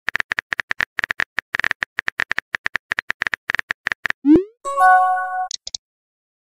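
Text-messaging app sound effects: rapid, irregular keyboard-tap clicks for about four seconds as a message is typed, then a short rising whoosh as it sends, followed by a brief chime-like message tone.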